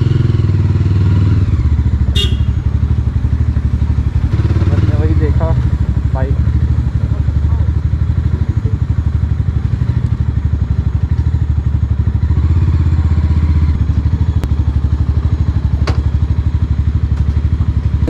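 Mahindra Mojo's 295 cc single-cylinder engine running steadily while the bike is ridden slowly, its exhaust pulsing fast and evenly.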